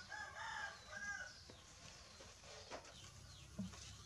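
A rooster crowing once, a call of about a second near the start, followed by a few faint soft knocks.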